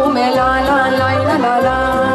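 A girl sings a Romanian folk song into a microphone, amplified over a folk-music backing track. The melody wavers with vibrato over a regularly pulsing bass.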